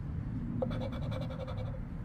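A scratch-off lottery ticket's coating being scratched away in quick, even strokes, uncovering a play spot.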